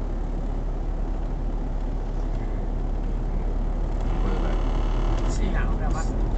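Steady low rumble of a car's engine and tyres on the road, heard from inside the cabin while driving at about 52 km/h.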